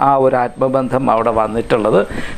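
Only speech: a man talking steadily in Malayalam.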